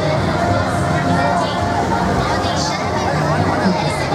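Street crowd chattering, many voices overlapping, with music faintly underneath.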